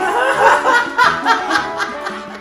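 A woman laughing hard, in short repeated bursts.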